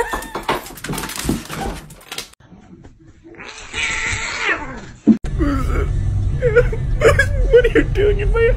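A golden retriever puppy whimpering in many short, high cries over the low rumble of a moving car, starting about five seconds in. Before that there are clattering knocks and a short loud cry.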